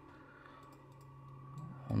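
Computer mouse buttons clicking, a quick run of faint clicks.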